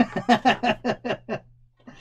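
A man laughing: a run of quick laughs, about six or seven a second, that fade out about one and a half seconds in.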